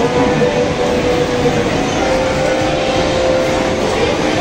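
Loud, steady amusement-arcade din: held electronic tones and jingles from coin-operated kiddie rides and game machines over a dense background noise.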